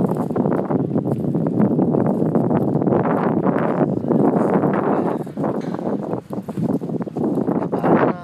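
Wind buffeting the microphone: a loud, uneven rushing noise that dips briefly a few times.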